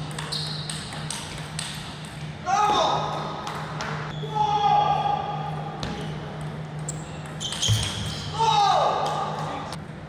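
Table tennis ball clicking off bats and table in quick rallies, ringing in a large hall. A player gives loud shouts after winning points, about two and a half seconds in, again around five seconds, and near the end.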